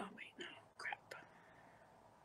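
A woman whispering or muttering a few quick breathy words to herself in the first second, then only faint room hum.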